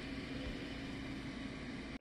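Steady machine hiss with a faint low hum underneath, level and unchanging throughout.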